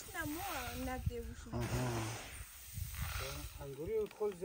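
Women's voices talking over a hissing rustle of wheat grain being shovelled and tossed onto a heap for winnowing.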